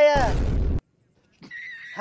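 A short pitched cry falling away, cut off by a harsh, noisy snort-like burst lasting about half a second. A faint thin high tone follows near the end.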